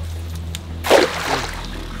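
A weighted cast net landing on the surface of a pond with one short splash about a second in, over a steady background music bed.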